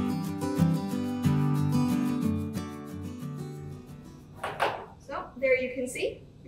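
Background music on acoustic guitar: a run of plucked notes that fades out a little past halfway. A woman starts speaking near the end.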